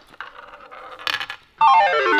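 A ball rattling and clicking around a toy roulette wheel as it spins down. About one and a half seconds in, a louder musical jingle of quick stepping notes starts.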